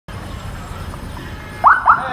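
Two short rising siren whoops, about a third of a second apart near the end, over a steady low rumble of street traffic.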